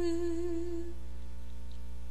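A female voice holding one steady sung note that fades out about a second in, over a soft sustained low musical drone that carries on.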